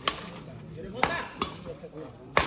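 Badminton rackets striking a shuttlecock in a doubles rally: three sharp string hits, one at the start, one about a second in and a quicker one just after it, over voices in the background.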